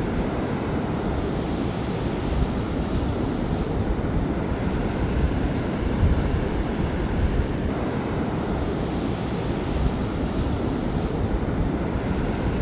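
Wind rumbling across the microphone over the steady wash of breaking surf.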